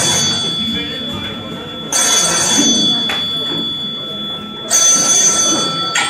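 A telephone ringing, in three rings about two and a half seconds apart, played back as a recorded effect over loudspeakers, with voices underneath.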